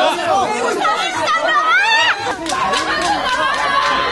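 A crowd of people shouting over one another in a shoving match, several raised voices at once, some high and strained, with a few brief knocks partway through.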